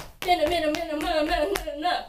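A woman's voice holding one long, wordless sung note that wavers slightly in pitch for most of two seconds, broken by a few sharp hits.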